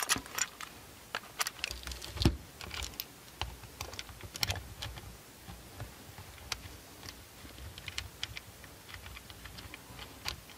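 Faint scattered clicks and taps of a camera and its metal holster mounting plate being handled as the plate's bolt is threaded into the camera's tripod socket, with one louder knock about two seconds in.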